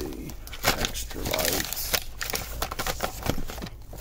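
Hands rummaging through a plastic storage bin of tools and supplies: plastic containers and packaging knocking and rustling in a string of short clicks and knocks.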